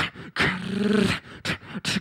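Beatboxing into a handheld microphone: a sharp click, then a held, rough-edged vocal tone lasting about a second, then short percussive clicks near the end.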